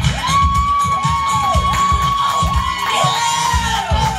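Karaoke crowd cheering and whooping over a disco backing track with a steady kick-drum beat. One high voice holds a long note for about three seconds, then falls away, with shorter rising-and-falling whoops beneath it.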